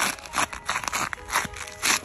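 A few short crunching, rustling noises, the loudest near the end: clothing and a shoe being handled while bending over to get a stone out of the shoe.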